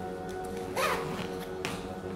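Zipper of a black fabric suitcase pulled shut in short quick strokes, over steady background music.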